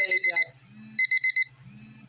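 Electronic alarm beeping: quick groups of four high-pitched beeps, one group about every second, sounding twice.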